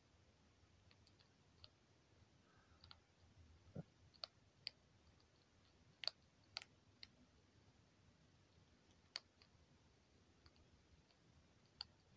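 Baby striped skunk biting and crunching at hard dry kibble. It gives about ten faint, sharp clicks at irregular intervals, with one duller knock about four seconds in. The loudest clicks come around the middle.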